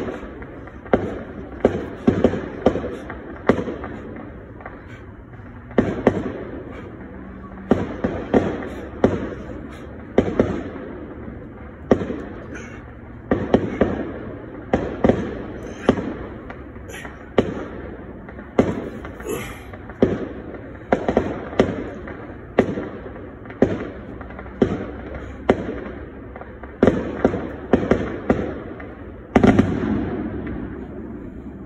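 Fireworks and firecrackers going off all around in an irregular string of sharp bangs and pops, each with an echoing tail.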